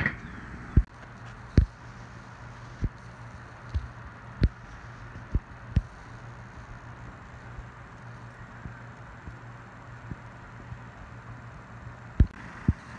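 Metal lid of a Brinkmann Smoke'N Grill smoker knocking as it is handled: several sharp knocks in the first six seconds, the loudest two about one and one and a half seconds in. Under them is a steady low rushing hum.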